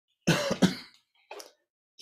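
A man clearing his throat with two rough coughs in quick succession, then a shorter, fainter one about a second and a half in.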